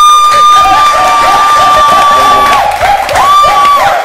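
Women cheering and laughing: one holds a long, high-pitched whoop for about two and a half seconds and gives a shorter one near the end, over quick, repeated bursts of laughter.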